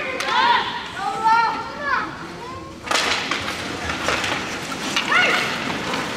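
Young players' high-pitched voices calling out across an ice rink. About three seconds in, a sudden scraping hiss of skate blades on the ice sets in, with sharp clacks of sticks and puck, and another short shout comes near the end.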